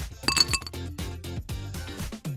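Ice cubes tipped from a small metal spoon into a little glass jar mug, clinking sharply against the glass several times in quick succession about a third of a second in, with a brief glassy ring. Background music with a steady beat continues underneath.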